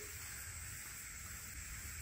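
Faint, steady background hiss with a thin, high, steady whine and no distinct sounds.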